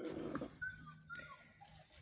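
Chickens making faint, soft calls: a few short high notes.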